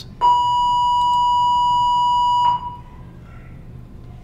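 An electronic beep: one steady high tone held for a little over two seconds, then cut off sharply.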